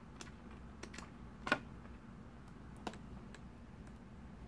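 Light clicks and taps of small pieces being handled on a plastic toy playset, a handful of separate ticks with the loudest about a second and a half in.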